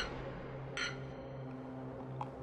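Quiet dining-room tone with a low steady hum, and a single short light clink of cutlery on a plate about a second in.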